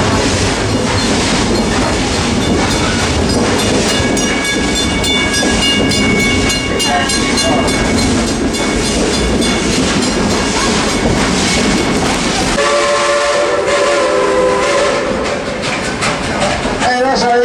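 Narrow-gauge steam train running, heard from an open passenger car: a steady rumble with clickety-clack from the wheels, and a multi-note steam whistle held for about five seconds, starting about four seconds in. Near the end the low running rumble drops away sharply.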